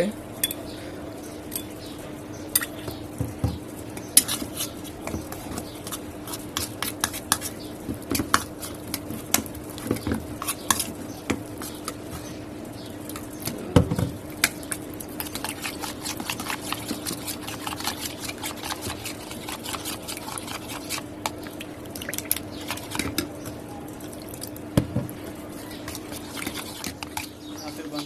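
A metal spoon stirring flour and water into a slurry in a glass bowl, with many quick clinks and scrapes against the glass, over a steady low hum.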